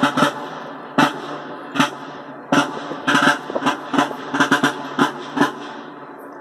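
Military field drums beaten by a marching drum corps in Napoleonic uniform: a march cadence of sharp single strokes about once a second with quick flurries of strokes between, stopping shortly before the end.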